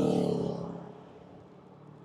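A newly fitted handlebar bell on an e-bike, just struck, ringing out and dying away over about a second and a half.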